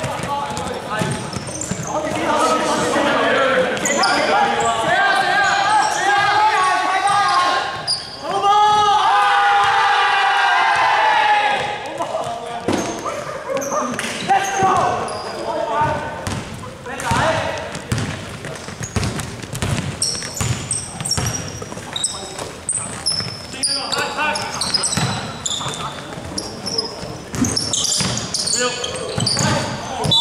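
Basketball being dribbled and bouncing on a hardwood court, with players' shouts ringing in a large sports hall.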